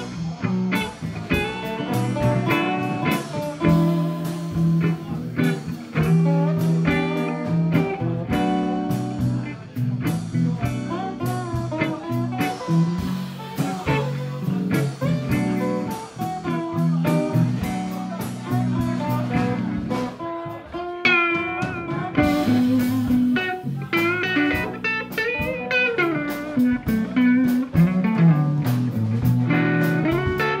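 Live blues band playing an instrumental passage: electric and acoustic-electric guitars, bass guitar and drum kit. Lead guitar lines with bent notes stand out in the last several seconds.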